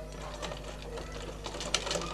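Domestic sewing machine stitching: a quick run of needle and mechanism clicks over a steady low hum, loudest near the end.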